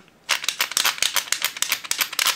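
Plastic ratchet lever on the back of a 1975 Kenner Six Million Dollar Man action figure clicked over and over, a fast run of sharp clicks starting a moment in. However often it is clicked, the arm it should raise does not lift, a fault the owner puts down to the ratchet gears slipping inside.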